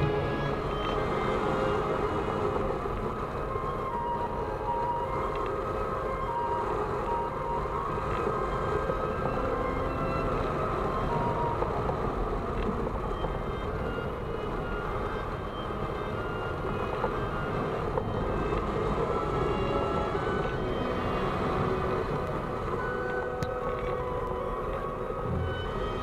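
Background music, a slow melody of held notes, over a steady rushing noise like airflow on the microphone.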